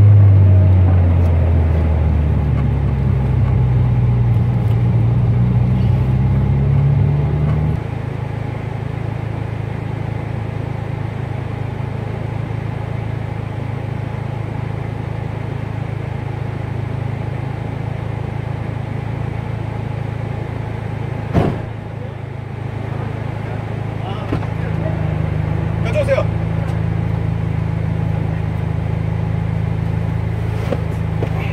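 Turbocharged 2002 Hyundai Tiburon 2.0-litre four-cylinder running at a standstill. Its engine trouble is a spark plug wire that keeps coming off its plug. The hum wavers for the first several seconds, then settles lower and steadier, with a single sharp click about two-thirds through, and grows fuller again near the end.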